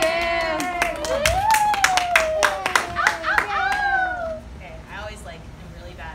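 A small audience clapping, with voices cheering over the claps in long calls; the clapping and cheering die down about four seconds in.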